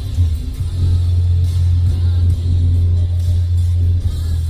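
Music with a deep bass note held from about half a second in.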